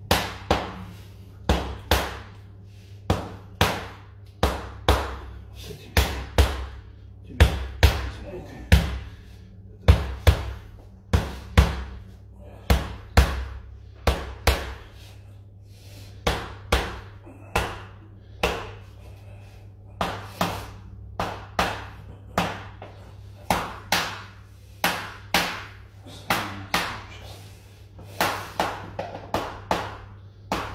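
A mallet striking a wooden stick held against a man's back, a percussive tapping treatment of the back muscles: sharp knocks at about one to two a second, with short pauses between runs.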